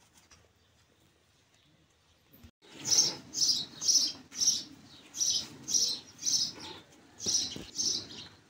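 A small bird chirping loudly and repeatedly, about two short chirps a second, starting about three seconds in after a quiet stretch.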